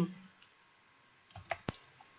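A few short, soft clicks about a second and a half in, the last one the sharpest: a computer mouse being clicked to advance a presentation slide.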